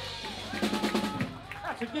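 A live blues band closing a song: a quick run of drum hits and cymbal crashes over the held last chord, which breaks off near the end as a man begins to speak into the microphone.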